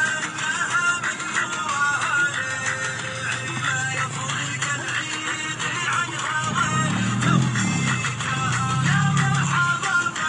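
Background music: a busy melody throughout, with low bass notes coming in a few seconds in and strongest in the second half.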